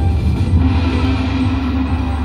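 Slot machine game music and sound effects over a deep low rumble, with a steady held note coming in about half a second in, sounding with the machine's symbol-upgrade feature.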